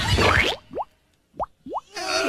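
The music cuts off about half a second in. Three short sound effects follow, each a quick upward sweep in pitch, like bloops.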